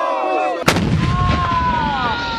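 A group of soldiers chanting and shouting, cut off about two-thirds of a second in by a single loud gun blast with a long rumbling tail, over which a thin high tone slides slowly downward.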